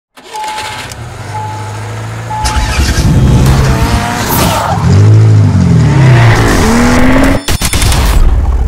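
Intro sound effect of a car: three short beeps about a second apart, then an engine revving up and down with tyre squeal. It cuts off sharply just before the end.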